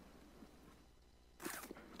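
Near silence: room tone in a pause of a talk, with one short, faint sound about one and a half seconds in.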